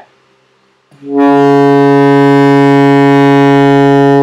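Alto saxophone sounding a single long, steady low B-flat, fingered as the fundamental of an overtone exercise for the altissimo register. The note starts about a second in and is held at an even pitch and loudness for about three seconds.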